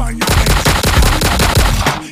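Machine-gun sound effect dropped into a DJ remix: a rapid-fire burst of noisy shots lasting nearly two seconds, cutting in as the beat stops just after the start. The music comes back in near the end.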